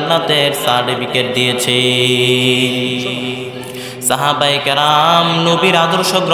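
A man's voice chanting a Bengali sermon line in a drawn-out melodic tune over a microphone. He holds one long note for about two seconds in the middle, then carries on singing the words.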